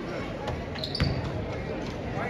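A basketball bouncing on a hardwood gym floor, with the sharpest bounce about a second in, just after a brief high squeak. Voices and chatter from the gym run underneath.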